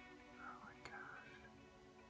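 Very faint background music with held tones, a soft whisper a little under a second in, and one small click.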